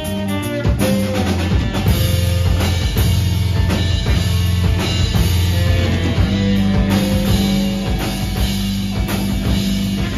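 A live rock band playing a song: drum kit, electric guitar and bass guitar together.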